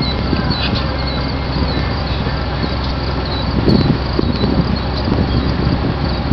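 Steady outdoor background noise with a constant low rumble and hiss, and a few faint high chirps.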